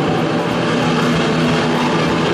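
Loud recorded music over the hall's sound system, a dense steady passage with sustained tones and no breaks.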